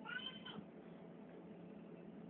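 A single short, high-pitched cry lasting about half a second at the very start, over a steady low hum.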